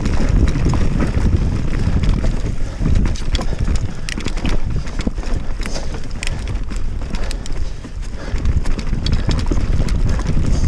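Mountain bike riding fast down a dirt forest singletrack: wind buffeting the microphone, with knobby tyres rolling over dirt and fallen leaves. Many sharp clicks and rattles come from the bike as it jolts over bumps and roots.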